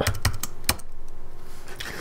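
Computer keyboard keys being pressed: a few quick keystrokes close together, then one more a moment later, as a command is typed and entered.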